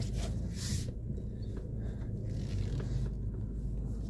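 Steady low rumble of a Ford car idling, heard from inside the cabin, with a short scraping rustle about half a second in.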